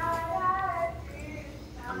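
Background devotional music: a high singing voice holds a slowly wavering melody under a pause in the narration. It fades about halfway through and comes back near the end.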